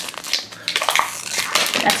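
Thin plastic packaging crinkling and crackling as a toy's plastic bottle-shaped container is squeezed in the hands and a plastic wrapper is pulled out of it, louder from about half a second in.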